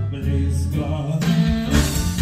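A live band plays an instrumental passage with sustained double-bass notes; drums and cymbals swell in near the end.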